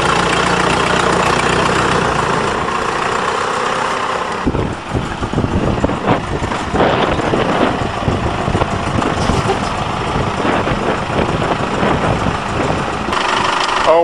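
Case 580B backhoe loader's engine running steadily as the loader lifts a scrapped car body. From about four and a half seconds in, irregular knocks and rattles join the engine sound.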